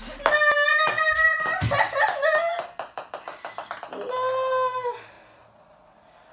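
A boy lets out a long, drawn-out yell while ping-pong balls tap and bounce on the hard surfaces around him, the taps quickening as a ball bounces to rest. A second, lower drawn-out cry follows about four seconds in, then the room goes quiet.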